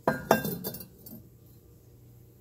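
Rae Dunn ceramic mugs clinking against one another as they are handled in a cabinet: a quick run of four or five light clinks in the first second.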